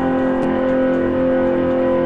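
Stratocaster-style electric guitar holding one chord that rings on steadily.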